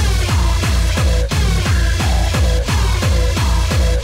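Early rave electronic dance music in a DJ mix: a loud, fast beat of deep kick drums that fall in pitch, coming back in right at the start and running on evenly.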